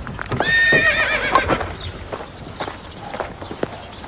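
A high, trembling animal call starting about half a second in and sliding down in pitch over about a second, followed by a few faint knocks.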